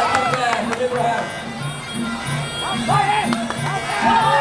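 Muay Thai sarama fight music: a wavering, gliding reed melody from the pi java (Thai oboe) over a steady drum beat of about two strokes a second.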